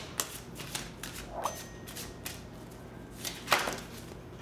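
A deck of cards being shuffled by hand: a run of soft, irregular card flicks and snaps, the loudest about three and a half seconds in.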